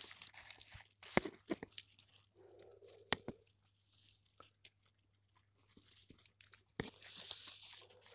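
Faint, scattered crunches, clicks and rustles of a hand moving over a hedgehog's spines and through dry soil and ivy leaves, with a few short, soft hisses.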